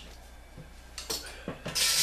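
Metal bottle caps dropped into a glass-fronted wooden shadow box: a few single clicks about a second in, then a handful rattling and clinking in together near the end.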